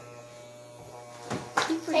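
Electric hair clippers running with a steady low buzz as they cut a man's hair. A couple of short noisy bursts come about one and a half seconds in.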